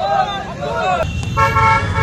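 A group of young men shouting protest slogans. After an abrupt cut about a second in, a vehicle horn sounds one steady note for about half a second.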